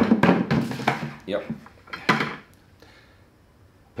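A blue Lowe's five-gallon plastic bucket being lowered into an orange Home Depot bucket: a sharp knock as it goes in, then a few more knocks and rubbing of plastic on plastic over about two seconds as it slides down and nests.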